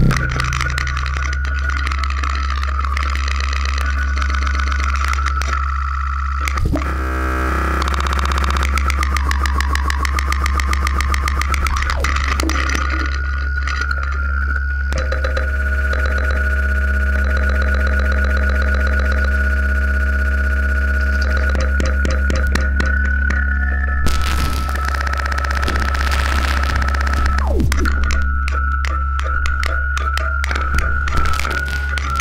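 Live noise music from a tabletop rig of springs, cymbals, wires and electronics. A loud, steady low hum runs underneath a held, wavering high tone, with buzzing, stuttering noise layered over it. The noise thickens for a few seconds near the end.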